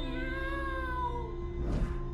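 Suspense film score: a low steady drone under a long wavering tone that slides down and fades after about a second, followed by a short swishing hiss near the end.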